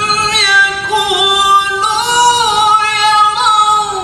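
A man reciting the Qur'an in the melodic tilawah style, holding one long, high, ornamented note on a single breath. The pitch lifts a little about halfway through and settles back near the end.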